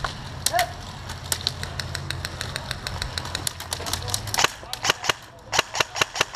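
Airsoft guns firing: a fast run of light, evenly spaced shots, about seven a second, then louder shots in irregular clusters over the last second and a half.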